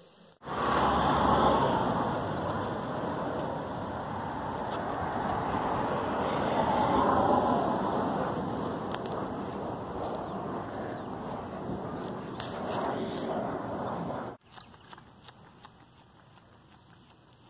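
Steady rushing outdoor noise, slowly swelling and easing, that cuts off suddenly near the end.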